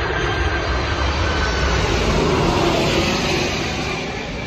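Jet airliner flying low overhead close to the runway, its engines producing loud, steady noise that eases slightly near the end.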